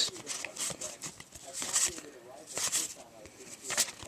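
Magic: The Gathering cards being slid and flicked one after another through a hand-held stack close to the microphone, giving a series of short, crisp papery snaps.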